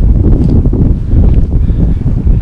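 Wind buffeting a handheld camera's microphone: a loud, uneven low rumble.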